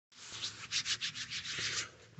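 Handling noise from fingers rubbing and fumbling against a phone's microphone: a quick, irregular run of faint scraping rubs.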